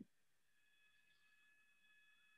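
Near silence: a pause in the call audio, with only very faint steady tones.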